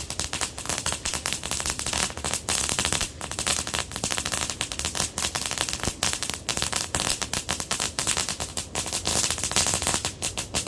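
Ground firework spraying sparks, giving a dense, continuous crackle of rapid small pops.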